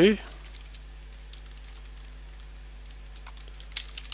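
Computer keyboard being typed on: a few scattered keystrokes, then a quicker run of clicks near the end.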